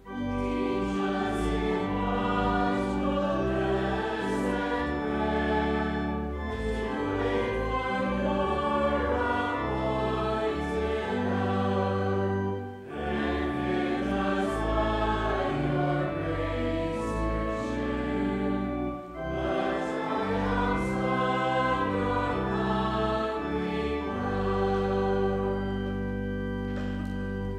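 Voices singing a hymn in parts with organ accompaniment, breaking briefly between phrases about 13 and 19 seconds in, and ending on a held chord.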